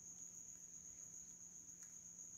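Near silence: faint room tone with a steady high-pitched whine and a faint low hum.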